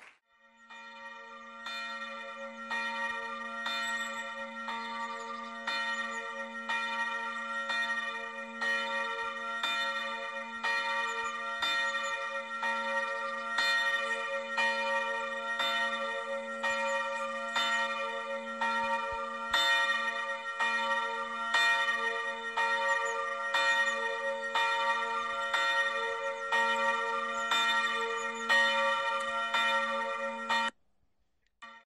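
Church bells ringing, a steady run of strokes about every half second with the hum and overtones held between them, fading in about a second in.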